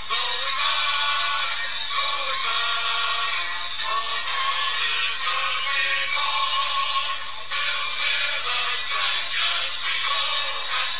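Marching string band playing a lively tune on saxophones, accordions and banjo, the reeds carrying the melody.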